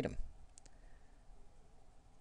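Two faint, quick clicks close together about half a second in, typical of a computer mouse button, against quiet room tone.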